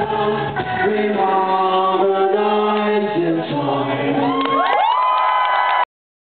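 Live rock band playing loudly, recorded from the audience: held chords with voices, then several notes slide upward and hold near the end before the sound cuts off suddenly.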